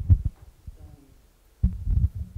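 Dull low thumps and rubbing from a handheld microphone being handled and passed between audience members, with a faint voice in the middle.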